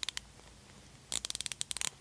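Snap-on quarter-inch drive 80-tooth ratchet clicked close to the microphone: a few quick clicks at the start, then about a second in a fast run of fine, closely spaced clicks lasting nearly a second.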